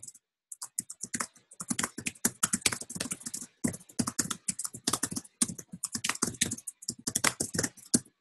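Fast typing on a computer keyboard: a dense run of key clicks with a few brief pauses.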